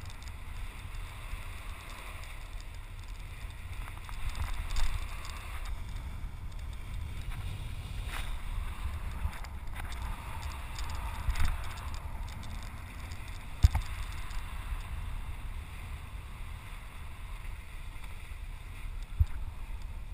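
Harpoon fishing boat at dead idle on open sea: a steady low rumble with wind on the microphone and water noise, and one sharp knock a little past the middle.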